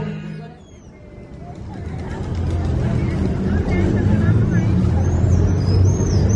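Guitar music fading out in the first second, then outdoor city-square ambience building up: a steady low traffic rumble and a babble of people's voices, with short high chirps near the end.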